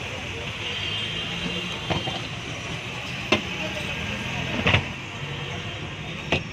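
Steady street traffic hum around a roadside food cart. Three sharp knocks sound over it about two, three and a half, and just under five seconds in; the last is the loudest.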